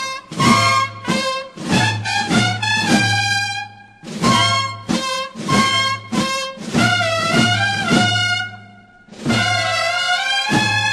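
Cornetas y tambores band (bugles and drums) playing a Holy Week processional march: bugle phrases over drum strokes, with brief pauses between phrases about four and nine seconds in.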